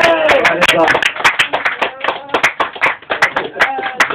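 Small audience clapping, distinct irregular hand claps rather than a wash, with voices calling out over it, loudest around the start.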